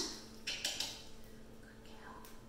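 A few faint clicks and rustles of handling about half a second in, over a steady low electrical hum.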